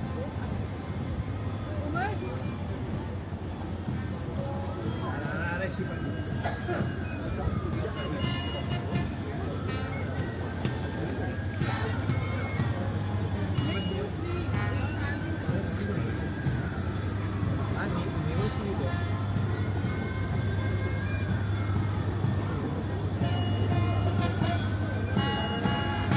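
Street and traffic noise with crowd chatter. A siren wails over it, rising and falling about every four seconds from about five seconds in.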